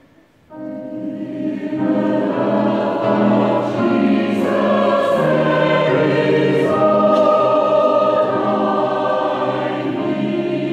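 Mixed men's and women's Salvation Army songster choir singing a hymn in parts. After a brief pause at the start, the voices come back in about half a second in and grow louder by about two seconds, holding sustained chords.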